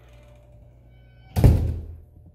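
A single heavy thump about one and a half seconds in, fading within half a second.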